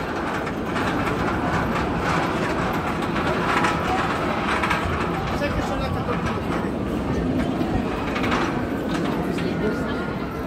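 Shambhala, a Bolliger & Mabillard hyper coaster, its train climbing the top of the chain lift hill: a steady rattling clatter heard from the ground, with park crowd voices behind it.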